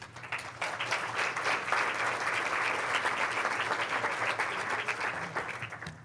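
Audience applauding: a steady patter of many hands that swells within the first half second and dies away near the end.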